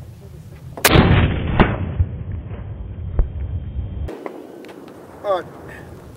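A single shot from a .30-06 Mauser bolt-action rifle about a second in. It is followed by a long rolling echo, with a second sharp crack inside it about a second after the shot, and the echo dies away roughly three seconds later.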